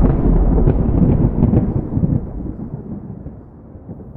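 A deep rumbling boom that hits suddenly and dies away over about three seconds.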